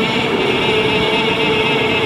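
A man's voice chanting a devotional salam (salutation to the Prophet Muhammad) into a microphone, holding one long steady note.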